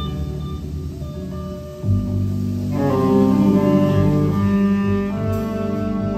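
A live band of saxophones, upright bass, drums and electric guitars playing, with low, held upright-bass notes to the fore. The band comes in louder about two seconds in, and more instruments join higher up about a second later.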